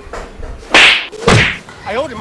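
Two loud whip-like swishes about half a second apart, typical of a comedy sound effect.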